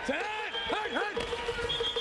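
Quarterback shouting his snap-count cadence at the line, over a held background tone, then a referee's whistle starting shrilly near the end as a defender jumps offside.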